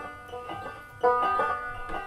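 Banjo picking a short solo passage, plucked notes ringing one after another, with a stronger chord struck about a second in.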